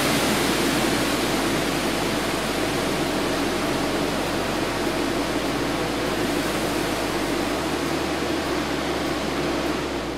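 Reacton fire suppression system discharging its suppressant into a test enclosure: a steady rushing hiss that eases slightly near the end.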